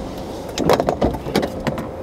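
A car door being opened as people move to get out: a run of clicks and knocks from about half a second in until near the end, over the low steady noise of the car and a faint steady tone.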